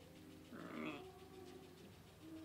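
A sheep bleating once, a short wavering call about half a second in.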